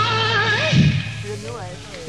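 Male rock singer's high, wordless wail, sliding in pitch with vibrato over a live blues-rock band. A drum hit lands near the middle, the sound dips in the second half, and the voice swoops up again at the end.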